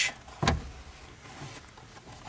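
A single sharp plastic click about half a second in, from the push-button latch of a Dodge Ram upper glove box door being pressed.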